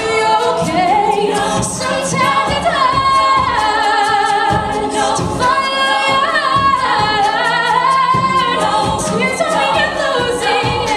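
A cappella group singing live: a female soloist leads over close-harmony backing voices, with vocal percussion keeping a steady beat.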